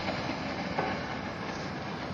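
Steady rushing hiss of steam and heated water venting from the heater test rig's outlet pipe.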